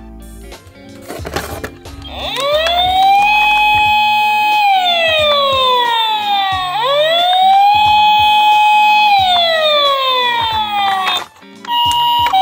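Electronic wailing siren of a battery-operated toy ambulance, over background music. It sounds in two slow cycles, each rising quickly, holding, then gliding down, and cuts off near the end.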